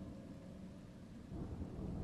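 A faint, low rumbling noise that grows louder about one and a half seconds in.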